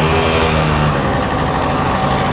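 A motor vehicle's engine running nearby with a steady hum, fading slightly near the end.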